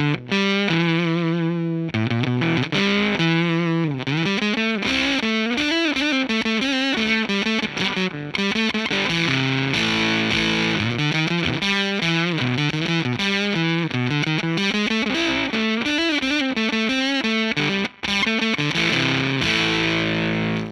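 Electric guitar played through a Crazy Tube Circuits Limelight germanium fuzz pedal with its gain turned up a little, into a Fender '65 Twin Reverb amp. It is a continuous fuzzed lead line with bent notes and vibrato, with a brief gap near the end.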